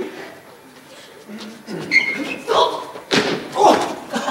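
Thuds and bumps of actors scuffling on a wooden stage in a staged fight, with two loud sharp impacts about three seconds in, echoing in the hall.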